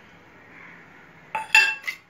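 Metal kitchenware clinking: two or three short, ringing clinks about a second and a half in, after a stretch of low hiss.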